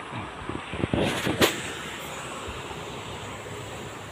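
Steady outdoor rushing background noise, with a few short knocks and rustles about a second in as the phone is moved.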